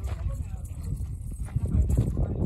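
Wind buffeting the microphone in an irregular low rumble, with faint, indistinct voices of people close by.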